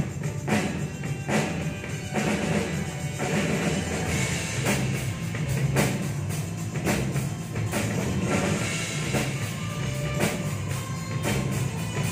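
Two drum kits played together in a steady rock beat, with kick drum, snare and cymbal strikes about twice a second, over recorded rock music with a sustained bass line.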